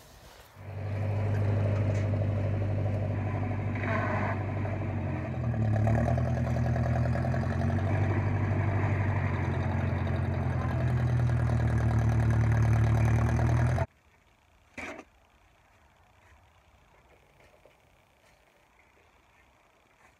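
Massey 50 tractor engine running steadily, with a brief change in pitch about five or six seconds in. It stops abruptly after about fourteen seconds, and a single short knock follows in the low quiet after it.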